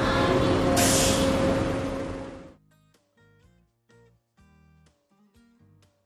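Bus engine running as a sound effect, with a short hiss about a second in; it cuts off suddenly after about two and a half seconds. Soft plucked guitar music follows.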